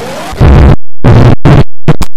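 Harsh, heavily distorted and clipped noise from a glitch-effect edit of cartoon audio. It starts as a quieter hiss with a rising tone, then jumps about half a second in to a much louder, stuttering noise that cuts in and out in choppy bursts.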